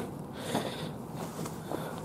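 A pause between words: faint steady background noise, with one short breath about half a second in.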